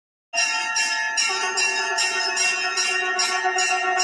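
Temple bell rung continuously during aarti, struck in quick repeated strokes about two or three times a second, its ringing tones overlapping into a steady peal. It starts suddenly just after the beginning.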